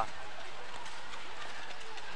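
Steady background noise of a gymnasium hall: an even murmur with no distinct sounds standing out.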